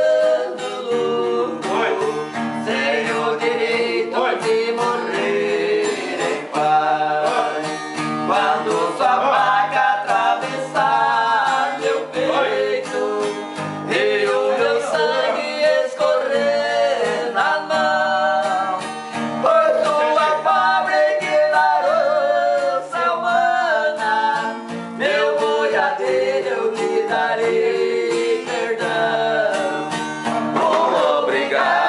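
Men singing together in an unbroken song to a strummed steel-string acoustic guitar.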